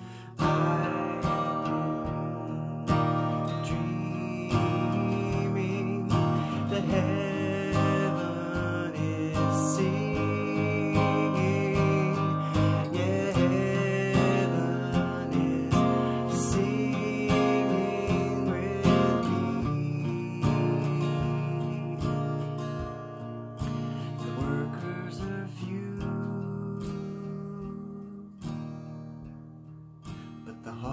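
Acoustic guitar strummed in a steady rhythm of chords through an instrumental passage, with no singing. It starts with a firm strum and eases off in level near the end.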